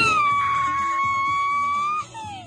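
A single long, high-pitched call from the audience, held on one note for about two seconds over faint dance music, then cut off suddenly.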